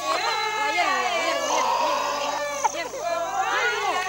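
Several voices talking and calling over one another in a local language.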